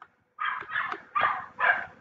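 A dog barking in the background: about four short barks in a row, starting about half a second in.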